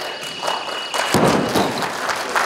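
Loaded barbell with rubber bumper plates dropped from overhead after a completed snatch, landing on the lifting platform with one heavy thud about a second in.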